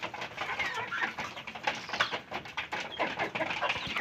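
A flock of hens pecking food from a tray on a concrete floor: many quick, irregular clicks of beaks, with soft clucking among them.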